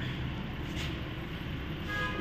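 A steady low rumble, with a vehicle horn giving a short toot near the end.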